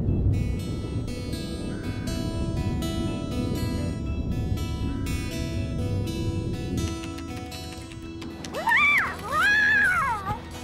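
Background music for the scene change, then near the end a cat meowing twice, the second meow longer.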